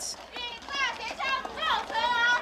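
Marchers' voices shouting: several short, high-pitched shouted phrases one after another.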